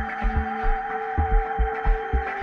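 Live electronic music: a deep, repeating kick drum under sustained synthesizer tones.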